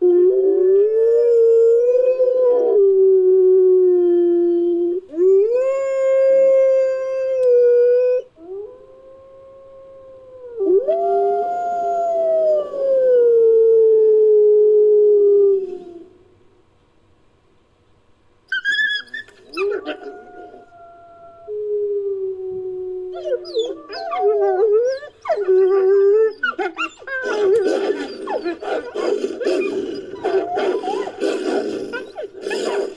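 Wolf-like howling sound effect: a run of long, drawn-out howls, some rising and then falling in pitch, with short breaks between them. After a pause about halfway through come higher, thinner whining cries, and near the end several overlapping cries over a rougher sound.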